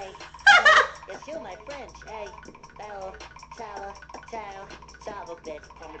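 Voices talking and shouting, with one loud, high-pitched shriek about half a second in that stands well above the rest.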